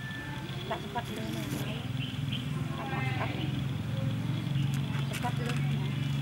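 Indistinct voices over a steady low hum, with a short pitched call about three seconds in.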